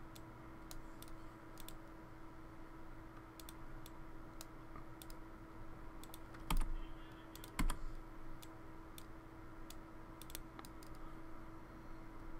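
Scattered, irregular clicks of a computer mouse and keyboard during on-screen node editing, with two louder knocks a little past the middle, over a steady low electrical hum.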